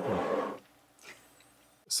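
A man's short, raspy, growl-like 'ahh' exhale right after a sip of bourbon, falling in pitch and lasting under a second: his reaction to the burn of a higher-proof pour. It is followed by near quiet and a quick breath just before he speaks.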